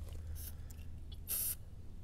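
Aerosol spray paint can spraying a mark onto tree bark: a faint short hiss about half a second in, then a stronger, brief hiss a little past one second.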